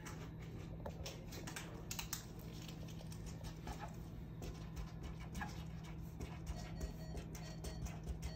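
Paper-wrapped surgical drape pack and indicator tape handled on a countertop: light scattered taps, crinkles and rustles, over a steady low hum.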